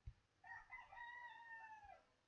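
A rooster crowing faintly, one crow of about a second and a half that drops in pitch at the end.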